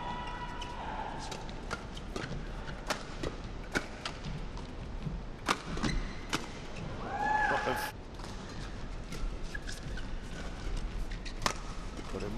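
Badminton shuttlecock struck back and forth by rackets in a fast doubles rally: a quick run of sharp cracks, with a lull about two thirds of the way through before play resumes.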